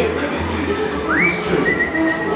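A whistle sliding up and held, about a second in, then a second, slightly lower held note. It is the ride's recorded whistle of the jailed animatronic pirates calling the dog that holds the cell keys, heard over ride music and voices.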